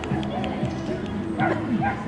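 A small dog barking a few short, high yips as it starts its agility run, over background voices and music.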